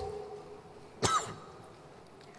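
A single short cough about a second in, after the echo of the last spoken words fades.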